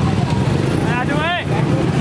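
Steady low rumble of road traffic, with a short voice calling out about a second in.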